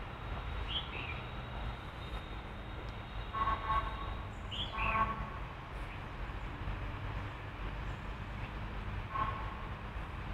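Distant city traffic rumble with vehicle horns honking a few times, around three to five seconds in and again near the end. A bird chirps briefly now and then.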